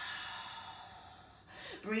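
A woman's long open-mouthed sigh: a breathy exhale released after a deep breath in through the nose, fading away over about a second and a half. The spoken word "breathe" begins near the end.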